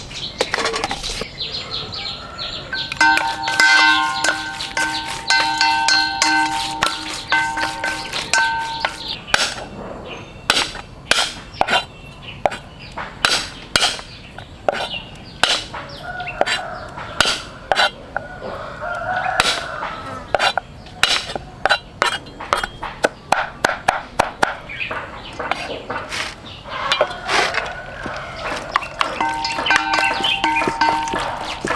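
Bamboo chopsticks and a metal spoon clicking against a stainless steel bowl as raw pork is mixed with seasoning: a run of quick, irregular clicks that starts about a third of the way in and goes on to the end.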